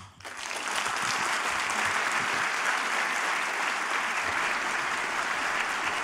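A large audience applauding, the clapping swelling within the first second and then holding steady.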